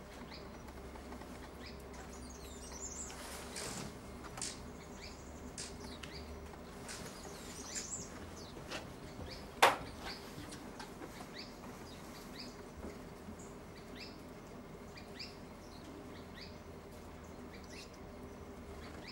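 Scattered short, high bird chirps and a few quick downward-sweeping calls, with one sharp click about halfway through.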